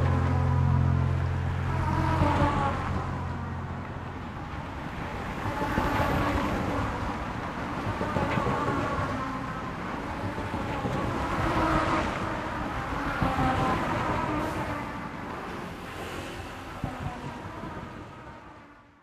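Road traffic: cars passing in a series of swells, each rising and then fading. It starts under the last low note of the song, which rings out and stops about four seconds in, and the whole sound slowly fades toward the end.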